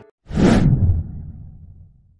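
A whoosh transition sound effect, starting suddenly about a quarter second in, with a low tail that fades away by the end.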